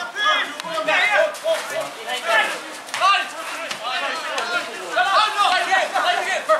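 Men's voices shouting and calling out during play in a Gaelic football match, several loud calls overlapping, with no clear words.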